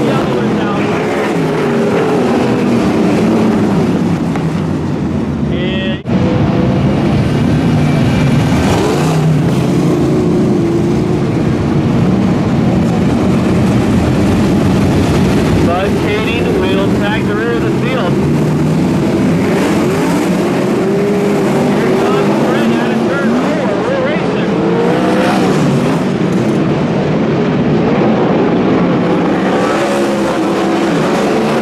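A pack of winged 410 sprint cars racing on a dirt oval, several methanol-burning V8 engines revving up and down through the turns. The sound drops out for an instant about six seconds in.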